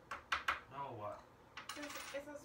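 A coin scratching and tapping at a scratch-off lottery ticket on a table: a few sharp clicks in the first half-second, then a quick run of fine scratches near the end.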